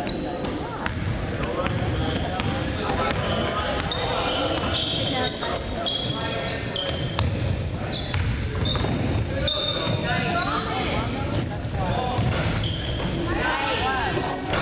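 Basketball game on a hardwood gym floor: the ball is dribbled and many short, high sneaker squeaks come one after another, over the chatter of spectators, echoing in a large gym.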